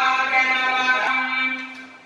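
Devotional mantra chanting on a long held note. The chant breaks off about a second in, leaving a fainter steady tone that fades away.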